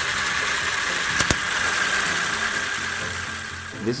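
Pneumatically shifted two-speed robot gearbox running under its electric motors, loaded by a gloved hand on the output shaft, with a steady high whine and gear noise. A single sharp clack a little after a second in as it shifts gear.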